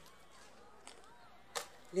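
Quiet room tone broken by a single short, sharp click about one and a half seconds in, with a fainter tick before it.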